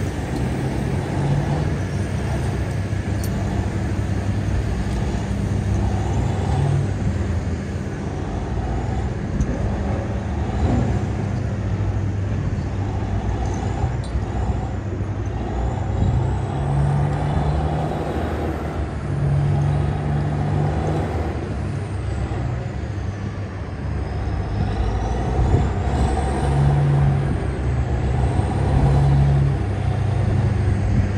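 Caterpillar 993K wheel loader's big diesel engine running under load, its note swelling and easing every few seconds as the machine works.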